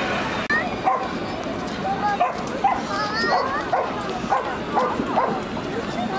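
A dog barking and yipping in short repeated calls, with people's voices around.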